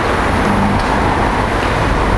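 Steady road traffic noise, a continuous even rumble and hiss of vehicles.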